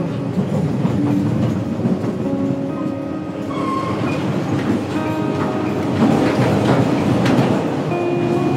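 TAZARA passenger train running on the rails: a steady rumble of the moving coaches with wheels clicking and clattering over the track, a little louder near the end. Faint music plays underneath.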